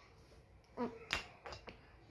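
A short, quiet 'mm' from a child, then a few sharp smacking clicks of the mouth, as in pretend eating.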